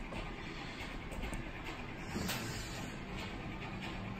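Quiet steady background hiss of room tone, with a few faint light ticks.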